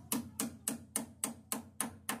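Claw hammer driving a nail into a wooden roof rafter: a quick, even run of blows, about three and a half a second, each with a short dull ring from the timber.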